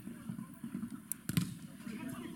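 A football kicked hard: one sharp thud about one and a half seconds in, with faint players' voices in the background.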